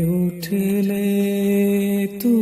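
A man singing a Bengali Islamic devotional song: a short phrase breaks off about a third of a second in, then he holds one long steady note.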